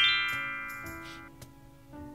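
Background music: a fast rising run of ringing notes that fades away over the first second and a half, then soft plucked-string music.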